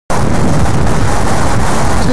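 Loud, steady wind rumble buffeting the camera microphone.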